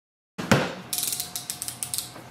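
A knock, then a quick run of sharp ratcheting clicks: a snap-off utility knife's blade being pushed out of its plastic handle.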